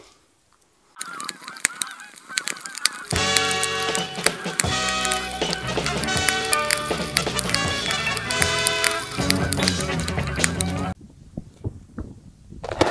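A flock of geese honking, with music underneath. The calls start about a second in, grow fuller about three seconds in, and cut off near the end.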